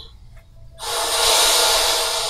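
A sudden loud hissing rush of noise from the anime's soundtrack, starting a little under a second in and fading slowly.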